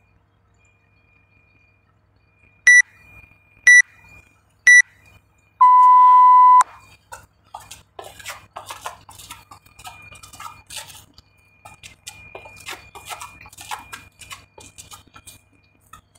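Interval timer sounding three short countdown beeps a second apart, then one longer, lower beep that starts the next work round. After it comes irregular crunching and scraping of gravel as a man drops and jumps through bar-facing burpees.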